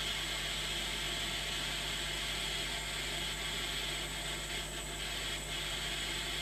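Pen blowtorch flame hissing steadily as it heats an SMA connector and semi-rigid coax, reflowing the solder around the joint.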